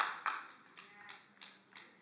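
A quick run of about seven light, sharp taps, roughly three or four a second, loudest at the start and fading.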